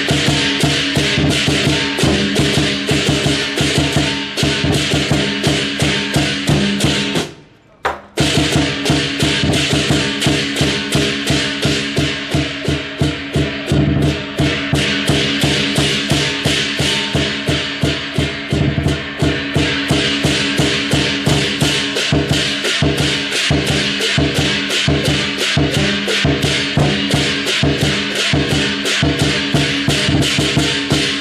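Lion dance percussion: a Chinese drum with cymbals and gong playing a fast, steady beat. It stops for about a second some seven seconds in, then starts again.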